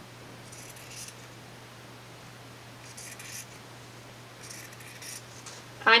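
Fabric scissors cutting through cotton double gauze along the selvage edge: three short, faint runs of snipping, a couple of seconds apart.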